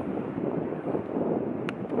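Wind buffeting the microphone: a steady low rush of wind noise, with one short click near the end.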